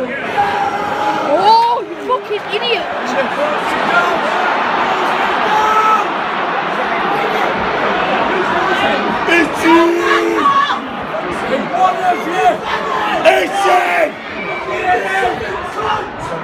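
Football crowd in a stadium shouting and roaring. The roar builds a couple of seconds in and eases after about ten seconds, with individual male shouts close by.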